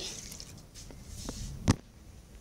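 Light handling noise with a small knock about a second and a quarter in and a sharper knock near the end, as things are handled on a tiled kitchen counter.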